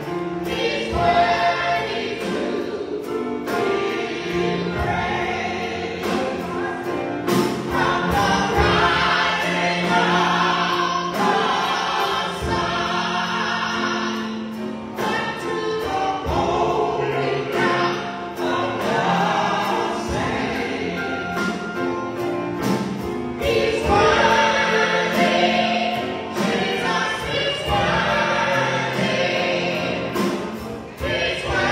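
Gospel praise song sung by a small group of voices, two women and a man, with live band backing: drum kit with regular hits, guitar and keys.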